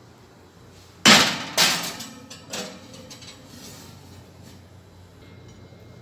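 Clatter at a kitchen oven holding a glass baking dish: a loud clank about a second in, a second about half a second later and a lighter knock after, each ringing briefly.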